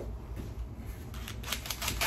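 Quiet at first, then a quick run of light clicks and rattles near the end as a cordless drill is handled close to the microphone.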